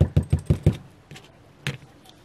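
A quick, even run of small clicks, about six a second, that stops a little under a second in, followed by one more click near the end.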